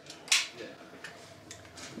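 DSA SA58 rifle's action giving one short, sharp metallic clack about a third of a second in as its charging handle and bolt are worked, followed by a couple of faint ticks.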